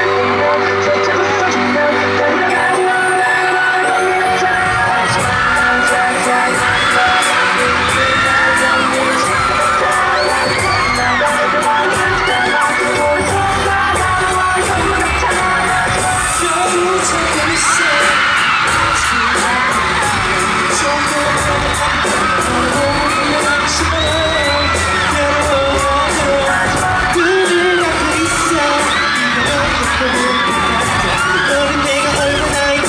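Loud K-pop song playing through an arena sound system, with the deep bass coming in strongly a few seconds in. A large crowd of fans screams and cheers in high voices all the way through.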